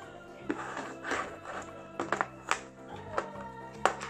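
Steady background music with about half a dozen sharp plastic clicks and taps as a plastic lunch box's snap-latched lid is unclipped and taken off; the loudest click comes near the end.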